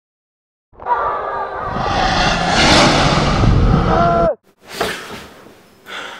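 A loud, swelling rush of noise with held tones, a dramatic dream-sequence sound effect, builds for about three seconds and cuts off suddenly. A sharp gasp and heavy breathing follow as the boy wakes with a start.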